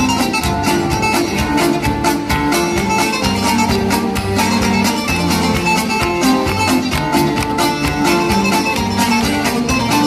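Live Cretan folk music: laouto strumming a fast, even rhythm under a bowed string melody, with a steady bass line.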